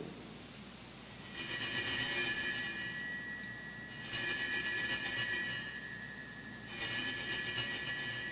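Altar bells rung three times, about a second in, near four seconds and near seven seconds, each ring bright and jangling, then fading. They mark the elevation of the consecrated host at Mass.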